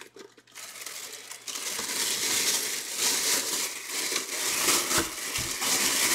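Clear plastic bag crinkling and rustling as a football helmet wrapped in it is handled close to the microphone, with a couple of dull bumps near the end.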